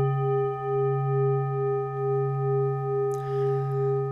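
Tibetan singing bowl ringing on after a single strike: a deep hum with several higher overtones, wavering slowly in loudness as it sustains.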